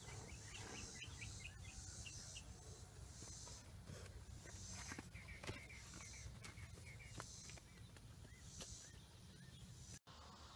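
Faint outdoor ambience at a pasture. Small birds chirp in short runs, a high buzz pulses about once a second, and a low steady rumble sits under it all.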